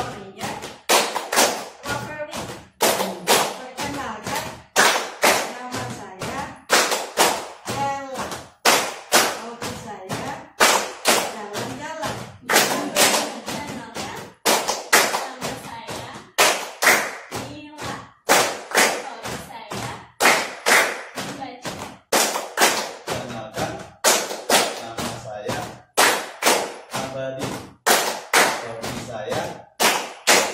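A group clapping their hands together in a rhythmic pattern that repeats about every two seconds, with voices chanting along.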